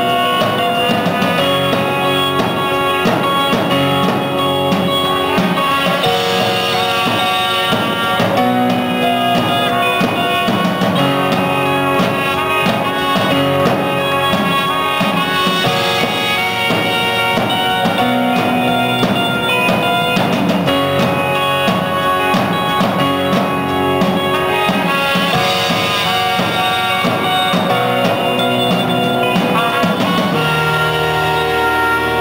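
A live band plays an instrumental passage: trumpet lines over drum kit, bass guitar, electric guitar and keyboard, with a steady beat and no singing.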